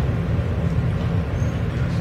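Steady low hum and rumble of background noise picked up by the podium microphone, with no voice in it.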